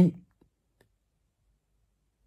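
A man's voice finishes a word just after the start, then near silence broken by a few faint clicks.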